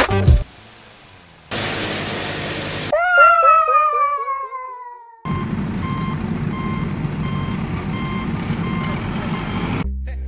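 A string of dubbed sound effects: a short hiss, then a falling, warbling tone, then a heavy vehicle engine rumbling steadily with a reverse-warning beeper beeping about twice a second.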